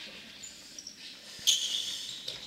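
Sneakers squeaking on a hardwood gym floor as futsal players run and turn: several short, high-pitched squeaks, the loudest about one and a half seconds in.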